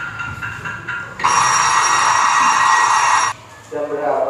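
A loud alarm-clock bell from a cartoon played through a TV's speakers, ringing for about two seconds and then cutting off suddenly. A few electronic notes come before it, and a cartoon voice starts just before the end.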